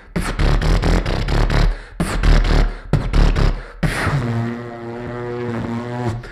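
Beatboxing into a handheld microphone: a fast run of vocal percussion hits, then, about four seconds in, a change to one long, low held vocal note.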